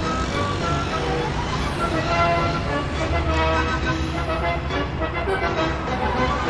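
Background music playing over the sound of road traffic passing.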